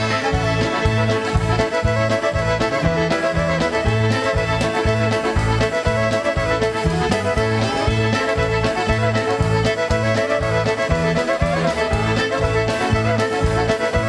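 Polka band playing a fiddle feature tune live: the fiddle leads over the band, with clarinet behind and a steady, evenly repeating bass beat.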